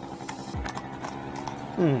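A horse's hooves clip-clopping on the road in a few scattered strikes, over a small scooter engine running steadily, the 50cc Yamaha Jog.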